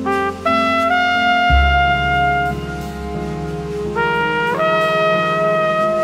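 Instrumental jazz passage: a horn plays the melody, a few quick rising notes leading into a long held note, then again about four seconds in, over a bass line.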